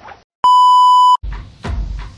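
A loud, steady electronic beep of a single pitch, lasting under a second after a brief silence; then music with a drum beat starts.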